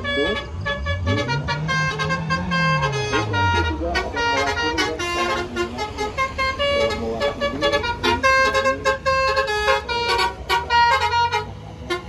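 Tour buses' multi-tone 'telolet' horns playing quick tunes of short notes that jump in pitch, over and over, as the convoy passes. A low tone rises and falls once in the first few seconds.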